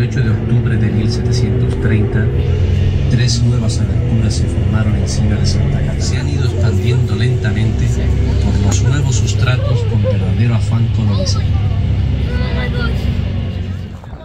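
Loud, steady engine and road rumble from inside a moving vehicle, with a voice and music playing over it. It starts and stops abruptly.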